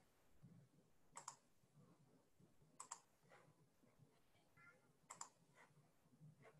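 Near silence with faint, sharp clicks: three double clicks spread through, like keys or buttons being pressed.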